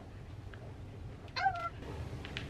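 A single brief, high-pitched vocal call about one and a half seconds in, dipping slightly in pitch at its end, with a few faint soft clicks around it.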